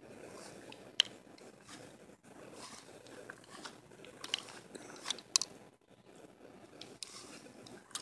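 Footsteps walking through lawn grass, a faint irregular crunching and swishing, with a few short clicks, the sharpest about a second in.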